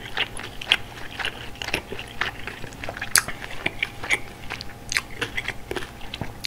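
Close-miked chewing of a mouthful of malatang, bean sprouts and wide glass noodles, with irregular crunching and wet mouth clicks. The loudest click comes about halfway through.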